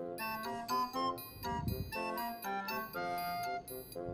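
Background music: a light melody of short, bell-like notes. A soft low thud comes about one and a half seconds in.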